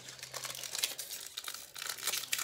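Foil wrapper of a Pokémon trading card booster pack crinkling and crackling as it is handled in the hands.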